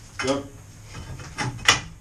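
Two sharp metallic knocks about a second and a half in, the second the louder, as a steel gas pipe and fitting are handled into place overhead.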